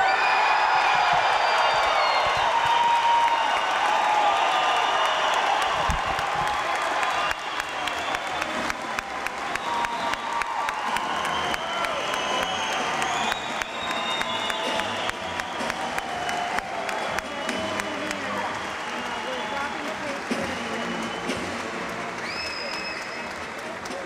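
Audience applauding, with crowd voices mixed in; the clapping is loudest over the first several seconds and then slowly dies down.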